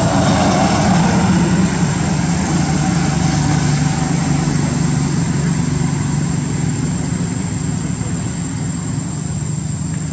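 A steady low drone like an engine running, with a thin high steady whine over it, easing off a little toward the end.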